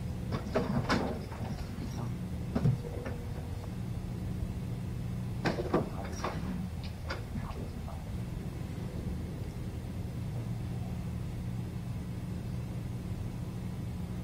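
Steady low hum of room tone, broken by short clusters of knocks, clicks and rustles: around one second in, near three seconds, and again between about five and a half and seven and a half seconds.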